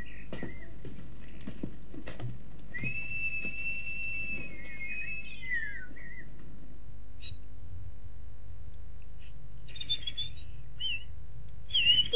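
A man whistling one long, nearly level high note that drops away at its end: a call to a robin. A few short, high bird chirps follow near the end.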